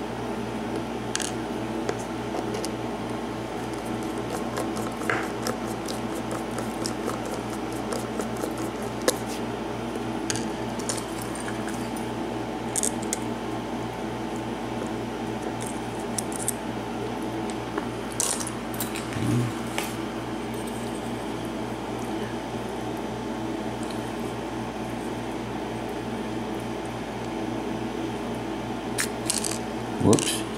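Scattered small metal clicks and scrapes as a brass pin tumbler lock cylinder is taken apart by hand with a tool, its plug being worked out of the housing, over a steady low hum.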